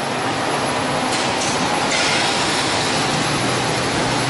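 Steady machinery noise of a running bottled-water production line, with a faint low hum underneath.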